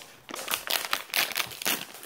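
Plastic mystery-pack wrapping being handled and crinkled, a quick irregular run of crackles and rustles.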